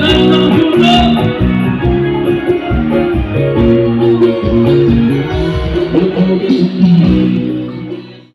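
Live band music with a steady beat, loud, fading down near the end.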